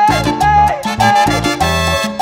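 Instrumental cumbia: a band plays a lead melody with pitch bends over short, repeated bass notes and a steady dance beat.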